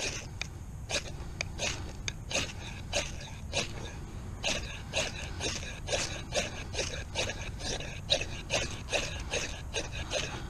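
A knife spine scraping down a ferrocerium rod again and again in quick strokes, about two to three a second. It is throwing sparks onto a wax-soaked cotton round that is not catching.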